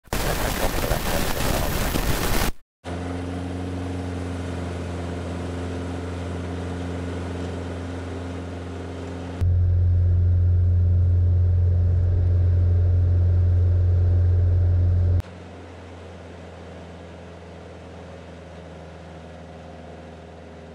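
Single-engine piston light aircraft at take-off power, a steady low engine and propeller drone through the take-off roll and lift-off. The sound changes suddenly in loudness and tone at three cuts, about 2.5, 9.5 and 15 seconds in, and the first couple of seconds are a loud rushing noise.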